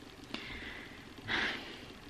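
A person's short breathy exhale through the nose, a little over a second in, after a faint click.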